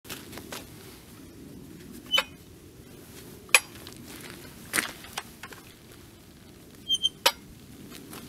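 Handling noise from a chainsaw with a clamped-on metal mill cutting guide being carried: about half a dozen sharp clicks and clinks, spread out, some ringing briefly. The saw's engine is not running.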